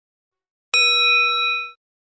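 A single bright bell ding sound effect, the notification-bell cue of a subscribe animation. It strikes suddenly about two-thirds of a second in and rings out for about a second.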